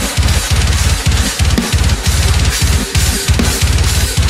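Heavy metal drum playthrough: runs of rapid double-bass kick drum strokes with short gaps between them, under a constant wash of Meinl cymbals, played along with the band's heavy music.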